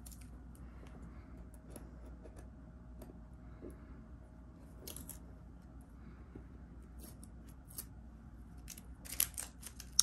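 Faint, scattered clicks and scratches of metal tweezers picking at and peeling adhesive vinyl stencil pieces off a painted wooden board, with brief louder clusters about halfway and near the end.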